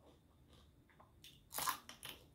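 A person bites into a handful of raw leafy greens and a small red vegetable, one crisp crunch about one and a half seconds in, after a few faint mouth clicks.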